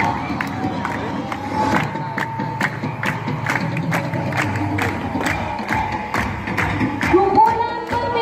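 A group of people clapping in a steady rhythm, about three claps a second, along with music and voices. Near the end a voice comes in with long sliding notes.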